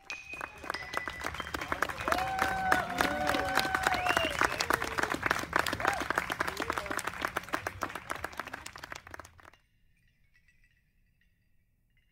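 Small audience clapping, a dense patter of many hands, with a few voices calling out in the middle. The clapping cuts off abruptly about nine and a half seconds in.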